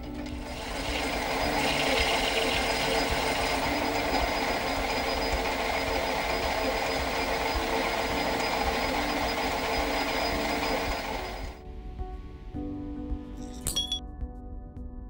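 Metal lathe parting washers off a brass bar: a steady, even cutting noise that runs for about eleven seconds and then stops suddenly, over soft background music. A single sharp click comes near the end.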